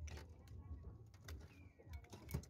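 A bird cooing faintly over a steady low hum, with a few light clicks.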